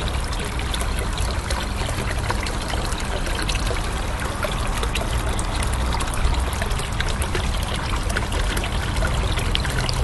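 Steady running water, a continuous trickling splash that stays at an even level.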